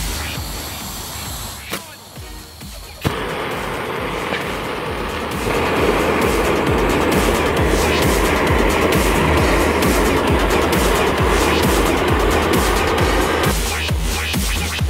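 Hissing rush of clamped gas-cylinder torches burning, starting with a sharp click about three seconds in and growing louder a couple of seconds later, stopping near the end. Electronic music with a steady beat plays underneath throughout.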